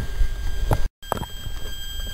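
Low rumble and handling noise on the microphone with a couple of faint knocks, broken by a moment of total silence about a second in where the recording is cut.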